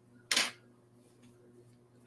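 A single short, sharp click-like noise about a third of a second in.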